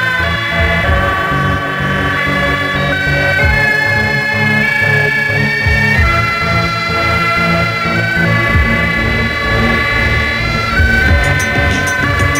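Electronic horror-film theme in a late-'70s/early-'80s European style, played on synthesizers. Long held lead notes change pitch every second or two over a pulsing bass line, and a ticking hi-hat-like percussion comes in near the end.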